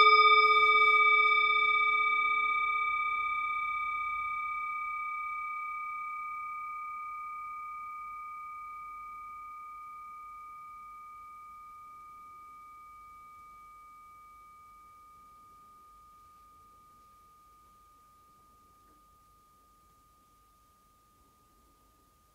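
A hand-held singing bowl, resting on a cushion, is struck once with a padded wooden striker. It rings with several tones at once and fades slowly over about twenty seconds. The lowest tone dies within a few seconds, leaving a high, clear ring that lingers to a faint end.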